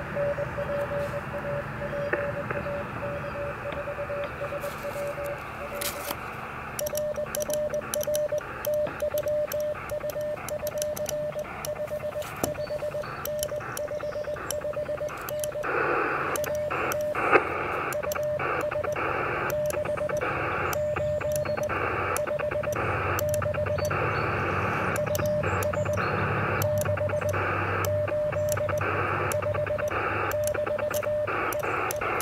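Morse code (CW) from a Mission RGO One HF transceiver: a single-pitch tone keyed on and off in dots and dashes over steady receiver hiss, in a park-to-park CW exchange. From about seven seconds in, sharp clicks from a Begali Traveler iambic paddle come with the keying, and the hiss grows louder about halfway through.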